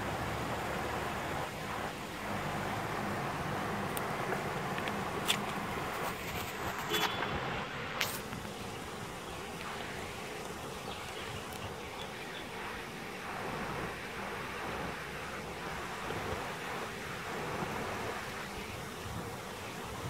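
Steady rush of a shallow river running over rocks, with the low, distant engine of a four-wheel-drive creeping down the far bank to the crossing, and a few faint clicks.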